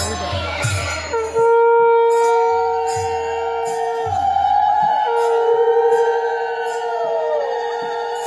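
A conch shell (shankha) blown in two long, steady, horn-like blasts: the first starts about a second and a half in, and the second follows a short breath at about five seconds. Wavering high-pitched voices sound over the blasts.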